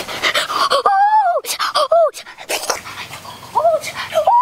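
Quick, breathy panting, then a string of short high whining cries that rise and fall in pitch: one longer cry about a second in, two quick ones around the middle and another near the end.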